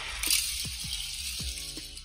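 A Hot Wheels car and a Matchbox car rolling fast along an orange plastic toy track and out across a wooden parquet floor: a hissing rush of small wheels that starts about a quarter second in and fades toward the end.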